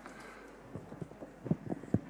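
Handling noise at a table microphone: a run of about six short, irregular knocks and taps in the second half, as things are moved about on the table beside it.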